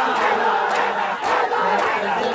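Crowd of mourners beating their chests with open hands in unison (matam), about two slaps a second, over the massed voices of men chanting.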